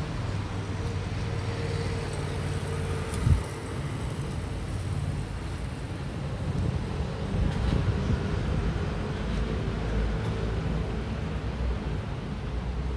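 Steady low rumble of road traffic, with vehicle engines humming, and a single thump about three seconds in.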